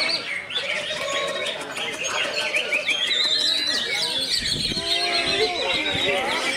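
Caged songbirds singing over one another in a dense run of chirps, trills and whistled glides, among them a green leafbird (cucak ijo). People are talking in the background.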